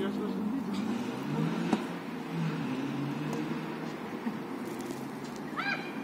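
Indistinct men's voices calling across an outdoor football pitch, with a single sharp knock about two seconds in and a short high-pitched shout near the end.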